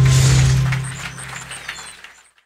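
Short closing musical sting: a loud low held note with bright, chiming high notes above it, fading away near the end.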